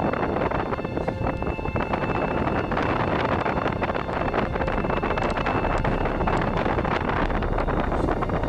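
A car driving at low speed: steady road and tyre noise, with wind rumbling across the microphone.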